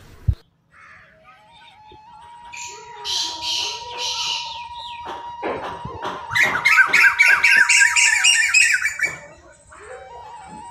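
Chukar partridges and other caged game birds calling: a few harsh, rasping squawks, then a fast run of repeated chuk calls, about three a second, that grows loud and stops just before the end.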